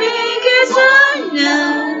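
A woman singing a Mandarin song into a handheld microphone, holding long notes; a little past halfway the melody slides down to a lower held note.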